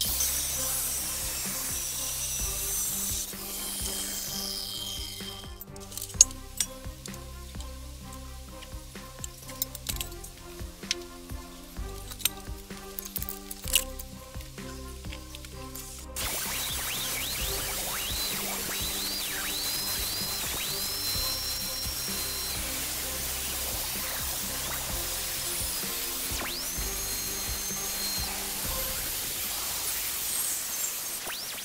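Background music throughout, over metal-cutting power tools. For the first few seconds an abrasive chop saw cuts steel, its whine falling as the blade spins down. From about halfway, a handheld angle grinder grinds steel with a steady loud hiss and high whines that rise and hold.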